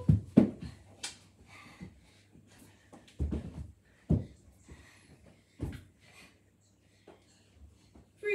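Dull thumps in a small carpeted house, three of them between about three and six seconds in, with a sharp click about a second in. Faint children's voices come from upstairs.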